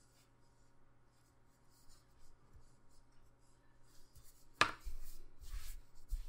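Faint rustling of yarn and a crochet hook working stitches, then a single knock about four and a half seconds in as the crocheted piece and hook are set down on the tabletop, followed by rustling as the fabric is smoothed flat.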